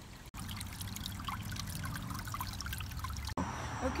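Water trickling steadily into a small garden pond, a continuous patter of small splashes that stops abruptly shortly before the end.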